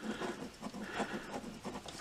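A coin scratching the coating off a scratch-off lottery ticket, a run of short, quick scrapes.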